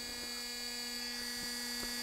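Handheld rotary tool with a cut-off disc running steadily and spinning free rather than cutting, a constant hum with a few faint ticks.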